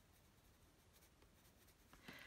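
Very faint scratching of a coloured pencil shading on toned paper, barely above near silence.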